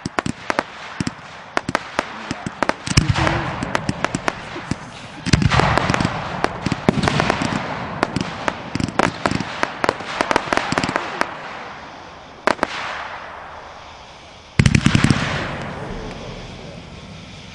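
Consumer aerial fireworks going off: a steady run of sharp pops and crackling bursts, with loud dense volleys about three, five and fifteen seconds in.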